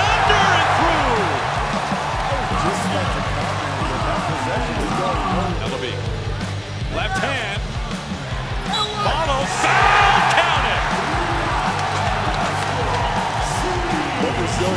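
Basketball game sound in a packed arena: crowd noise that swells into cheers right at the start and again about ten seconds in, over sneakers squeaking on the hardwood court and the ball bouncing.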